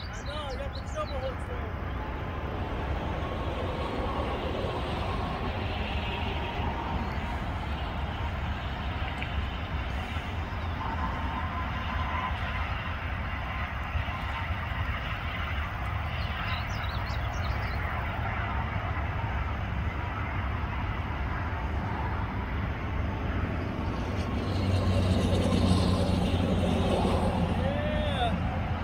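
Steady low rumble of distant road traffic, with a few faint bird chirps; a vehicle engine grows louder over the last few seconds.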